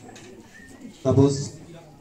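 A short pause in a man's talk over a microphone. About a second in comes one brief, low vocal sound, a single syllable or hum, before it goes quiet again.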